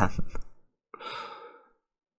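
A man's breathy sigh, a short exhale lasting about half a second, coming just after a trailed-off word.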